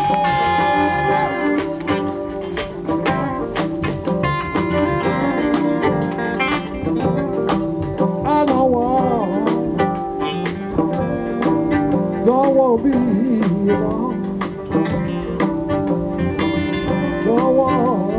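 Live blues band playing: a bowed fiddle carries the melody, with a long held note near the start and sliding, wavering phrases later, over electric guitar and banjo.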